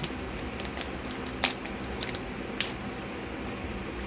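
A few short clicks and crinkles of a sheet face mask packet being handled, the loudest about a second and a half in, over a steady low room hum.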